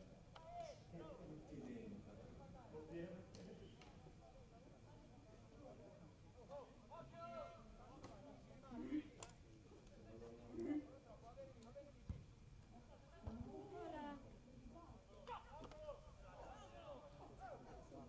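Faint, distant voices of footballers calling and shouting to each other on an open pitch, with a few short sharp knocks.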